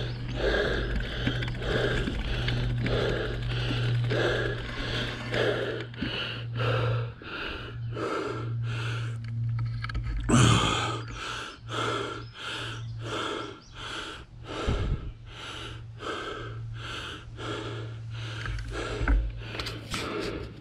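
A mountain biker breathing hard and rhythmically while riding, about two breaths a second, with one louder breath about halfway through, over a steady low hum.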